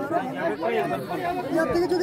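People talking over one another: overlapping conversational voices.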